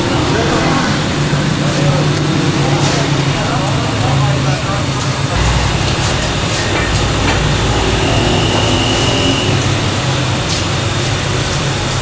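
Busy bakery noise: a steady low rumble that grows heavier about five seconds in, under indistinct background voices and occasional clicks and clatter.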